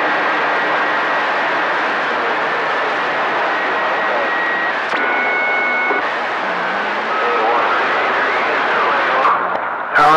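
CB radio receiver on channel 28 passing steady static hiss between transmissions, with a few faint steady whistle tones coming and going about halfway through.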